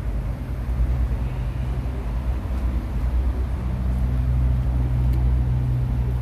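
A steady low rumble with no clear events, joined by a faint steady hum about halfway through.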